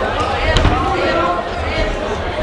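A couple of dull thuds from the boxers in the ring, the loudest just over half a second in, over steady crowd chatter and voices.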